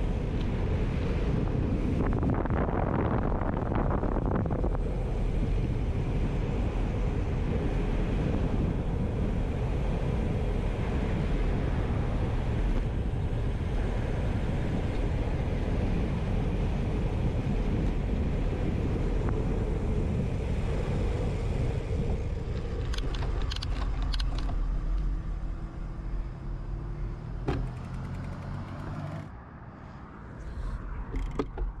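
Steady wind rush over a handlebar-mounted action camera's microphone, with tyre noise from a bicycle rolling fast on pavement. Near the end the rush eases and turns uneven as the bike slows, with a few light clicks.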